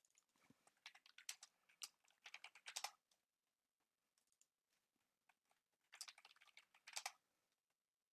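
Faint typing on a computer keyboard in two quick runs of keystrokes, the first lasting a couple of seconds and the second starting about six seconds in, with a few stray key clicks in between.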